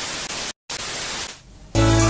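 Television static sound effect: a steady hiss that cuts out briefly about half a second in and fades away after about a second and a half. Music comes back in near the end.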